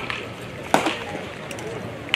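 A pitched baseball popping into the catcher's leather mitt: one sharp pop about three-quarters of a second in, over faint voices in the background.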